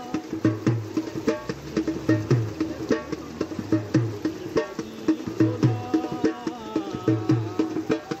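Dhol drum played in a steady folk rhythm. A deep bass stroke lands a little more than once a second, with sharp, crisp stick strokes in between, and a tune is carried over the top.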